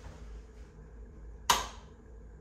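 A single sharp click about one and a half seconds in as a hand meets a plastic rocker light switch on the wall, over low room tone.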